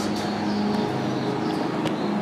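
Steady low mechanical hum over outdoor street noise, with a few light clicks.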